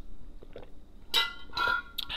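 Clinking from an insulated drink tumbler and its metal straw, twice about a second in, as the last of the water is drunk and the cup runs empty.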